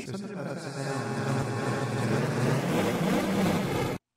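A vocal sample run through the Erica Synths Pico DSP's granular delay, smeared into a steady droning wash of overlapping tones that cuts off abruptly at the end.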